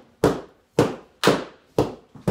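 Long training sticks striking each other in a steady drill: four sharp cracks, about two a second.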